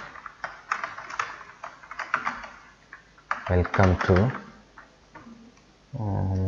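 Typing on a computer keyboard: a quick run of key clicks for the first few seconds, then a few scattered clicks near the end.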